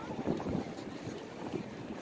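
Downtown street ambience of steady traffic noise, with a brief low rumble of wind buffeting the microphone near the start.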